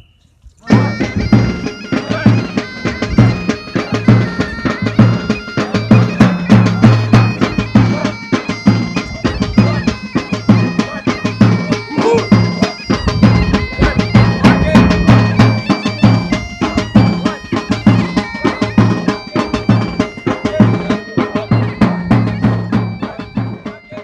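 Bagpipe and drum music: bagpipes play a tune over a steady drum beat, starting about a second in and fading near the end.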